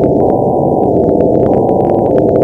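Loud, harsh, heavily distorted electronic noise with a muffled, cut-off top, shifting slightly in tone roughly twice a second, with faint crackles above it.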